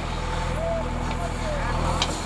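JCB backhoe loader's diesel engine running steadily at idle, with a fast even low pulse.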